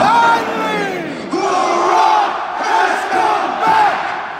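Arena crowd yelling and chanting together: one long call that falls in pitch at the start, then a run of shorter chanted calls over a steady roar.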